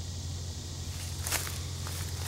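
Footsteps through leaf litter and brush, with a few sharp twig-like cracks from about a second in, over a steady hiss of running water and a low hum.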